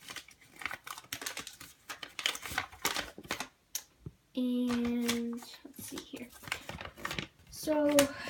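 A folded paper instruction sheet being unfolded, crinkling and rustling in quick irregular crackles. A little past the middle, a person hums one steady note for about a second.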